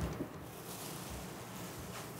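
Quiet room with faint rustling of bubble-wrap packing as a wrapped mineral specimen is lifted out of a box, and a soft click just after the start.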